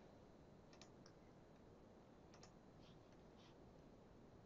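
Near silence broken by a few faint, irregular computer mouse clicks.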